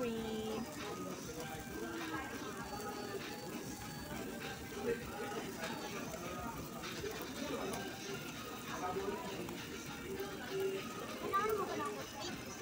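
Background music with indistinct chatter of other diners in a busy restaurant.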